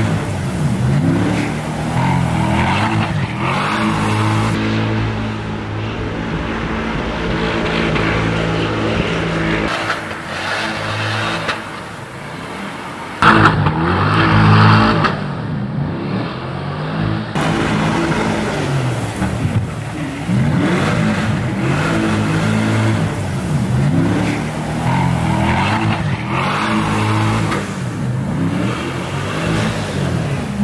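The 2024 Corvette E-Ray's 6.2-litre LT2 small-block V8 revving hard while the car spins donuts on snow, its pitch rising and falling over and over. A sudden louder burst comes about thirteen seconds in.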